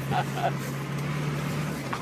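A steady low hum that stops shortly before the end, over a faint hiss, with faint voices in the first half second.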